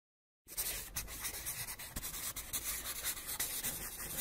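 A scratchy, rubbing sound effect starting about half a second in from silence.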